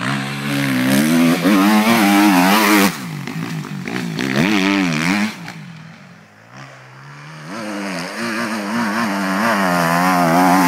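Suzuki RM-Z250 four-stroke single-cylinder motocross engine revving hard, its pitch climbing and falling with throttle and gear changes. It fades off about halfway through as the bike moves away, then builds again near the end as it comes back.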